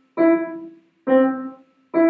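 Acoustic upright piano: three notes around middle C struck about a second apart, each dying away within about half a second, as the player goes back and forth between C and E with a bouncing staccato touch.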